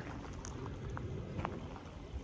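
Steady rush of a partly iced-over river flowing, with a few faint trickling ticks.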